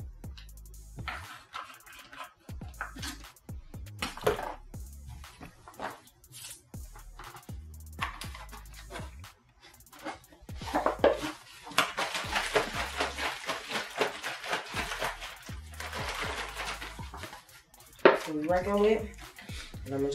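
Plastic gallon jug of water being handled, then shaken hard for several seconds in the middle to mix in liquid plant nutrients, the water sloshing inside. Background music with a steady bass beat plays underneath.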